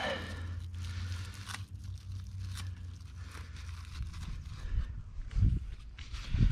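Large squash leaves rustling and crackling faintly as they are handled, over a steady low rumble, with a few soft low thumps near the end.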